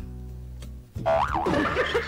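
A radio show's background music bed holds steady low notes. Just before a second in it breaks off, and a short sound effect plays whose pitch sweeps up and then down, followed by voices.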